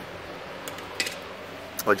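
A few faint, short metallic clicks over a steady low background hiss, from the steel smoker firebox being handled.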